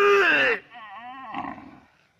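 A man imitating an animal call with his voice, a hand cupped at his mouth: a loud call falling in pitch for about half a second, then a quieter warbling call that stops just before the end.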